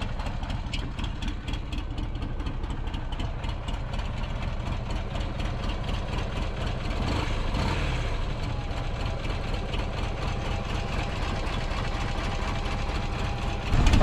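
Buell Ulysses XB12X's Sportster-derived 1200 cc V-twin idling very slowly and steadily, a low, even pulsing. The engine is fuel-injected but set to a very low idle.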